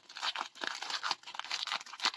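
Thin clear plastic bag crinkling and tearing as it is pulled open by hand, a run of irregular crackles.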